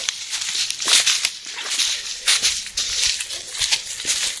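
Footsteps crunching through dry leaf litter, an irregular run of crackly steps.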